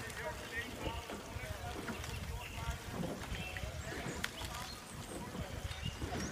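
Low, uneven rumble of wind and movement on the microphone, with faint distant voices.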